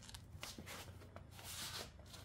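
Faint rustling with a few small, scattered clicks during a pause in speech.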